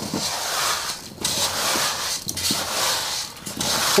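Straightedge scraping across fresh sand-and-cement render as it is screeded flat, in long rough strokes with short pauses between them.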